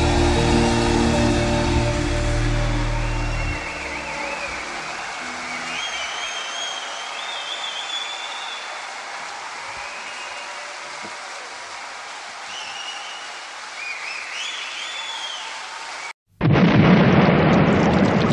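A steady rain recording with a few high chirps. Held music under it ends about three and a half seconds in. After a brief drop-out near the end, a new song's music starts.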